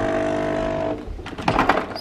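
Coffee machine running with a steady buzzing hum that cuts off about a second in, followed by a few short knocks.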